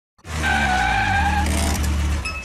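A car-intro sound effect of tires squealing over a low engine rumble, put through editing-software audio effects. It starts a moment in after silence, with a steady squeal tone that fades about three quarters of the way through while the rumble carries on.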